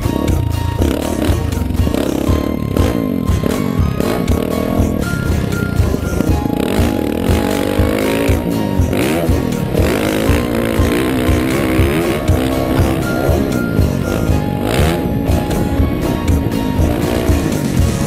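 Single-cylinder four-stroke engine of a 2010 Yamaha YZ450F motocross bike, its revs rising and falling as it is ridden hard round a dirt track, heard together with background music that has a steady beat.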